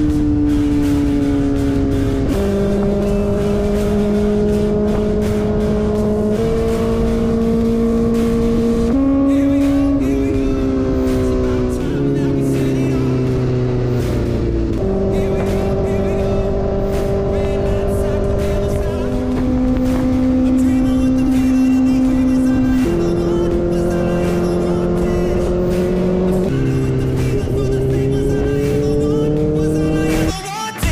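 A sport motorcycle's engine running at road speed, its pitch holding steady for a few seconds at a time and then jumping to a new level, with music alongside.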